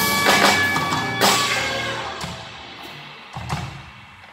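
Live band of electric guitar, drum kit and keyboard playing the final accented hits of a song, then the last chord and cymbals ringing out and fading away, with one more short drum hit near the end.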